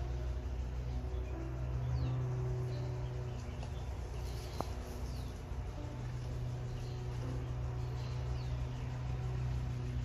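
A steady low hum with faint, short bird chirps now and then, and a single faint click about halfway through.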